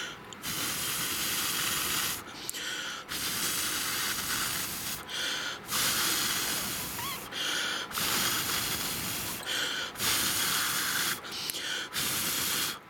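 Air blown in five long hissing puffs, each about a second and a half to two seconds with short breaks between, onto the cold side of a Peltier thermoelectric chip. It cools that side, widening the temperature difference and raising the chip's output.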